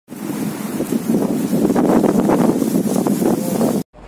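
Strong wind buffeting the microphone, a loud, dense rumble that stops abruptly just before the end.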